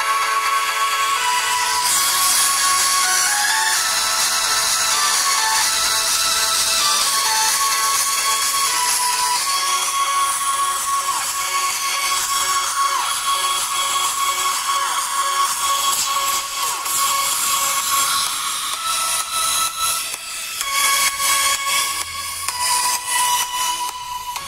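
A music track played through the Moto E4 smartphone's rear loudspeaker as a test of its sound quality, loud and steady, turning choppier near the end.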